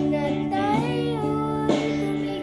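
A young boy singing a gliding sung phrase into a handheld karaoke microphone over a guitar accompaniment; the voice comes in about half a second in and holds until near the end.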